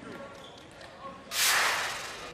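A loud whoosh lasting about a second, starting a little past halfway through: a TV broadcast's replay-transition sound effect, heard over faint gym background noise.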